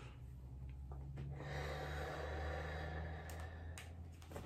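A man's long, slow exhale, a sigh, over a low steady hum, followed near the end by a couple of sharp clicks from headphones being handled as they are taken off.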